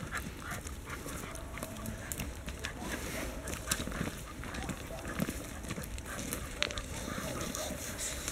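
Footsteps and a dog's paws crunching on a gravel path, a run of irregular short crunches.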